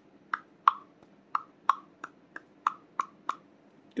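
Light metallic taps on the slide at the muzzle end of a Sig Sauer P238 pistol, about ten in a row at roughly three a second, each with a brief ring. The speaker calls it a good noise.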